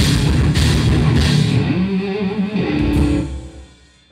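Live rock band, with distorted electric guitars, bass and drum kit, playing loudly with two cymbal crashes in the first second or so; the final chords then ring on and fade out about three seconds in, as the song ends.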